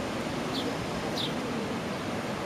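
Steady wash of surf breaking on the shore, with a bird giving two short high chirps that fall in pitch, about half a second and a second in.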